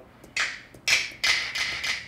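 Snap drum samples auditioned one after another from a sample browser: two short, sharp hits about half a second apart, the second ringing on longer.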